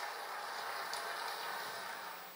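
Steady, even background noise of a billiards hall, with no distinct ball strikes.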